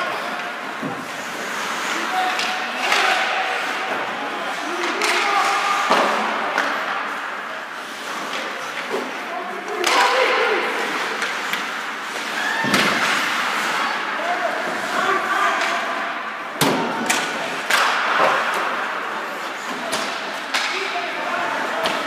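Ice hockey game in a rink: a continuous din of skates, sticks and distant voices of players and spectators, broken several times by sharp thuds and slams of pucks and players hitting the boards and glass.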